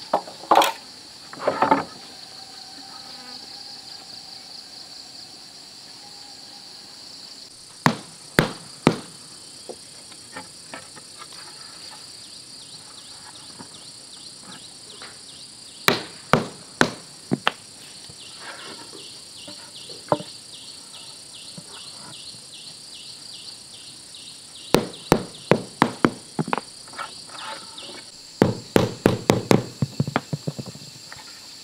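A mallet tapping wooden boards down into wet concrete: sharp knocks in short groups, over a steady high insect chorus. Near the end, wooden boards knock and clatter together in quick succession.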